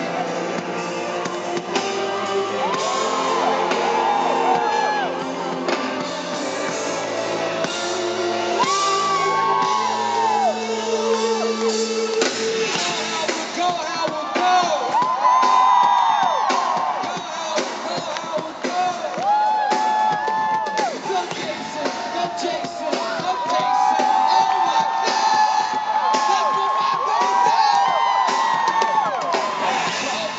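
Live pop concert in a stadium: the band's music over the PA, with many fans whooping and screaming over it. About twelve seconds in, the low sustained bass notes drop out and the crowd's screams stand out more.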